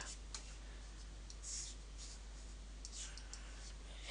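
A few faint clicks from a computer mouse, spread across a few seconds over a low steady room hum.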